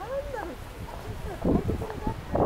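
Indistinct human voices: at the start one voice glides up and then down in pitch. About one and a half seconds in comes a louder noisy burst.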